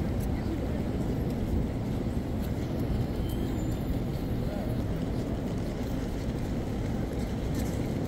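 Outdoor station-forecourt ambience: a steady low rumble of city background noise with faint, indistinct voices of passers-by.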